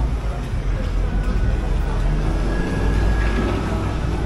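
Busy street ambience: a steady low rumble of traffic with indistinct voices in the background.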